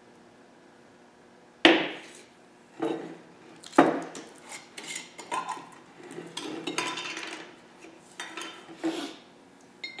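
Sharp clinks and clatter of steel pliers against glass mason jars and metal jar lids on a wooden workbench as fuel-line pieces are pulled out of the jars. The loudest are a single clank a little under two seconds in and another near four seconds.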